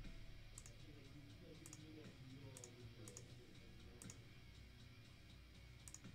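Computer mouse clicking: about five short, faint clicks spaced roughly a second apart, made while sorting a spreadsheet.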